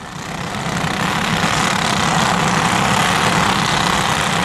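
Several small racing kart engines running together, fading in over the first second and then holding steady.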